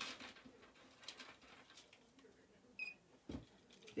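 Faint, scattered clicks and rustles of beaded jewelry being handled, with a brief high chirp near the end and a dull thump just after it.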